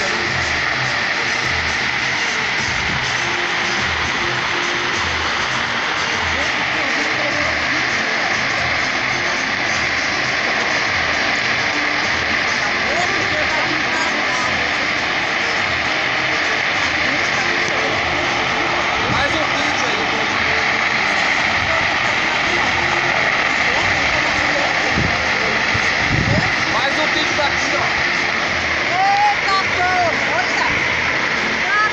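A large vegetation fire burning, a steady rushing noise with crackling, with music and voices faint underneath.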